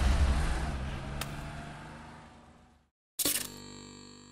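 A low engine-like rumble fades out over about three seconds, then a brief silence. A sudden sharp hit opens a sustained synthesizer chord: the channel's logo sting.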